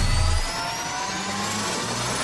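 Whooshing riser sound effect of a news channel's outro ident: a noisy rush with thin tones slowly rising in pitch and a low rumble that dies away about half a second in.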